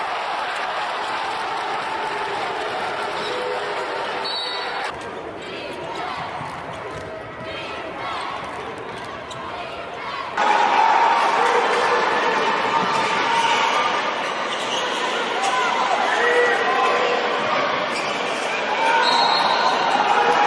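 Basketball game sound in an arena: crowd noise and voices, with the ball bouncing on the hardwood court. The sound drops about five seconds in and turns abruptly louder about ten seconds in, where one game clip cuts to the next.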